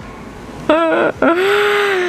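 A woman's high-pitched squeal of excitement, wordless: a short cry about three-quarters of a second in, then a longer breathy one that rises a little and falls away. It is a cry of delight at finding a rare cactus.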